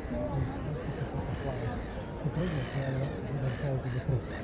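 Passers-by talking in a busy outdoor crowd, with several short, harsh high calls of a bird cawing over the voices.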